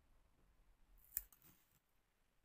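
Near silence with one sharp click a little over a second in, inside a brief crisp rustle at a bench.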